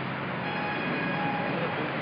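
Road traffic: a vehicle's engine noise with a steady hum, slowly growing louder as it approaches.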